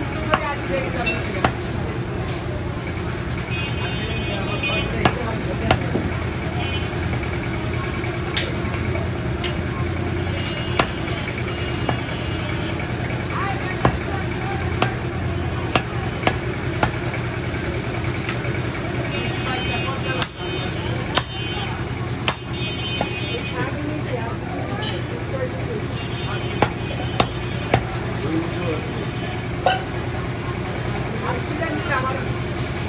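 Meat cleaver chopping goat meat on a wooden log chopping block, single sharp chops at irregular intervals, about a dozen in all, over a steady market background of voices and a low engine hum.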